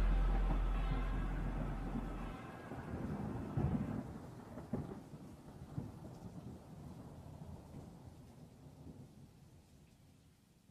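The song's final held low note stops about two seconds in, and a rumble of thunder with a few sharp cracks fades away to near silence.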